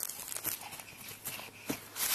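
A child's running footsteps on grass and scattered dry leaves, faint and soft, with a sharper footfall near the end as he reaches the leaf pile.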